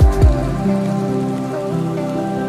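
Chill house lounge music: the last two deep bass-drum beats fall right at the start, then the beat drops out, leaving sustained synth pad chords over a soft hiss.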